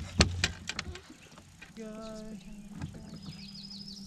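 A few sharp knocks and clatter in a fishing boat, four or so in the first second, followed by a quieter steady hum.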